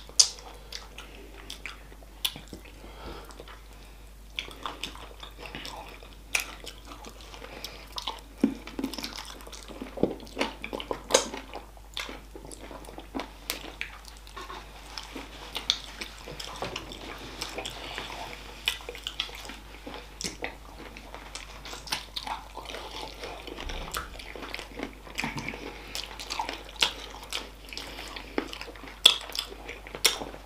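Chewing and biting on spicy chicken feet in sauce, close to the microphone: many short, sharp clicks at irregular intervals, the loudest right at the start and about a second before the end.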